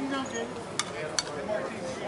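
Players' voices calling out, with two sharp clicks a little under half a second apart midway through.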